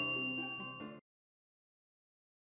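Bell-like notification chime ringing out over a held music chord, fading steadily, then cut off sharply about a second in.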